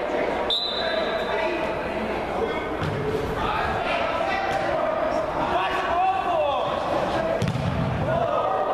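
Players' voices calling out in a large, echoing indoor hall during a seven-a-side football game, with the ball thudding now and then as it is kicked. A short high tone sounds about half a second in.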